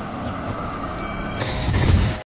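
Outro logo-sting sound effect: a steady rumbling whoosh with faint held tones, swelling deeper and louder near the end, with a burst of hiss about one and a half seconds in.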